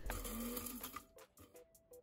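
Electric blade spice grinder running briefly on toasted whole spices, a faint whirring that stops about a second in. Faint background music plays under it.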